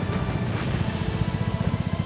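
Background music of a news report: a steady bed of rapidly pulsing low bass with no melody above it.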